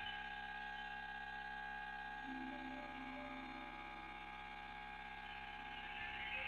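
Faint sustained drone of several steady tones, a quiet ambient passage in the music, with a soft lower tone swelling in about two seconds in and fading again.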